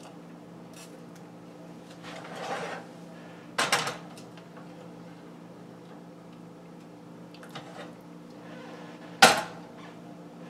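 Stainless steel pot and utensils knocking and clanking at an electric stove: a short scrape about two seconds in, a sharp clank just before four seconds, and the loudest clank near the end as the pot is moved off the burner. A steady low hum runs underneath.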